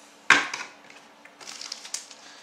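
A single sharp knock, about a third of a second in, on a hard tabletop. Near the end comes a run of fine crinkling as a foil trading-card pack is handled.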